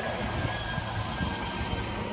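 Scania tipper truck driving past close by: a steady, low engine and tyre noise.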